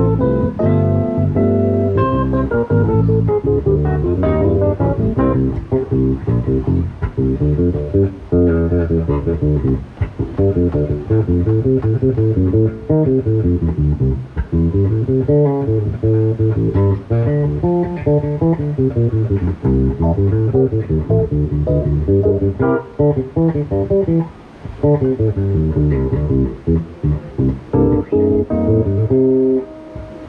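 Live instrumental music: an electric bass guitar playing busy, fast-moving melodic lines, with a Yamaha CP stage piano accompanying at the start and again near the end.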